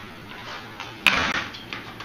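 Stunt scooter clattering on a concrete floor: a sharp metallic bang about a second in, as the deck and wheels come down, with a smaller knock just after and lower rolling noise around it.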